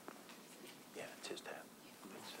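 Faint, low murmured speech about a second in, over a quiet room, with a few soft clicks and light rustling from binder pages being leafed through.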